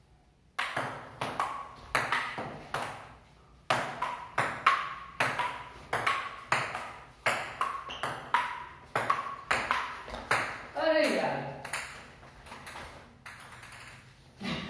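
Table tennis rally: the ball clicks in quick alternation off the paddles and the wooden table, with a short break about three seconds in. The rally stops after about ten seconds, and a voice calls out, falling in pitch.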